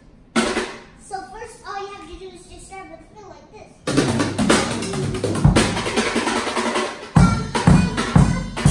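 Child-size drum kit: a single hit shortly after the start, then a few quieter seconds, then from about four seconds in a fast, busy stretch of snare, tom and cymbal strokes. Heavy bass drum kicks come in near the end.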